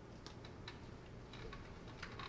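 Faint light clicks at an uneven pace, a few close together early and more after about a second and a half, over a low steady hum.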